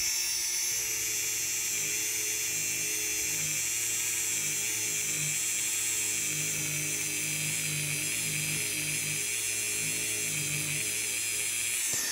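Dremel rotary tool running at high speed with a felt buffing wheel and fine polishing compound, buffing a guitar fret. It gives a steady high whine, with a lower hum that pulses unevenly.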